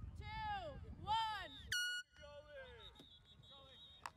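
High-pitched voices shouting in a quick repeated series of calls about every half second. They cut off abruptly a little before the middle, leaving a faint thin high tone and quieter voices.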